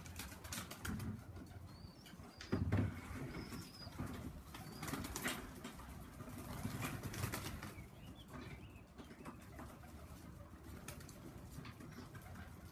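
Tippler pigeons' wings flapping and clapping as the birds flutter down onto the loft, with a loud thump a little under three seconds in and some low cooing.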